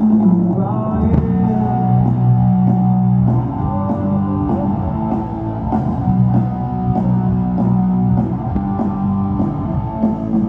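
Live rock band playing through an arena sound system: guitars holding sustained notes over bass and a drum kit, heard from the audience.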